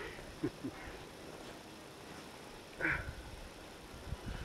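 A few brief vocal calls over a faint even background, the loudest one short call about three seconds in.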